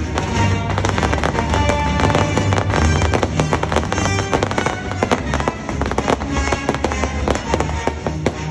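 Fireworks going off in rapid succession, a dense run of sharp pops and bangs, over loud show music.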